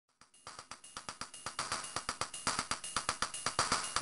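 Opening of an electronic track: a fast, even pattern of clicky drum-machine hits, about eight a second, fading in from silence and growing steadily louder.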